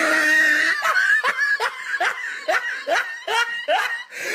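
A person laughing hard: a drawn-out opening, then a quick run of short rising 'ha's, about three a second.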